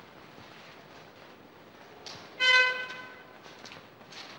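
A single horn-like toot about two and a half seconds in: one steady note that is loud for half a second and then fades over about a second.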